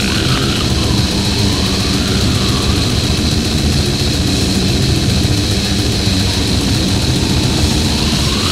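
Deathgrind recording: heavily distorted, down-tuned guitars and bass over fast, dense drumming, playing without a break.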